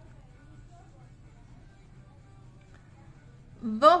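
Quiet room with a low steady hum and faint background music. A woman's voice comes in right at the end.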